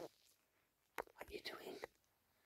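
Near silence with a faint click about a second in, followed by a brief soft whisper from a person.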